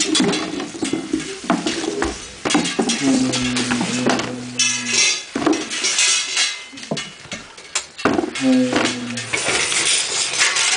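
Improvised clattering and clanking on metal found objects, with a low steady tone held for about two seconds in the middle and again briefly near the end.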